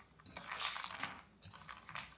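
Metal spoon stirring ice cubes and fruit in a glass bowl of milky Sprite-topped hwachae, with faint clinks of ice and spoon against the glass, mostly in the first half.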